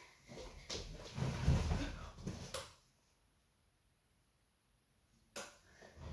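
Low thumps and knocks of a person moving about close to the microphone, with a couple of sharp clicks, for the first two to three seconds; then near silence for over two seconds, broken near the end by a sharp click.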